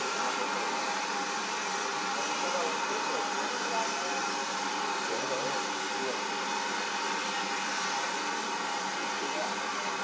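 Steady hiss of escaping steam from a steam tank locomotive drifting slowly in, with no distinct exhaust beats.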